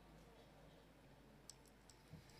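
Near silence: room tone in a pause between recited phrases, with three or four faint sharp clicks near the end.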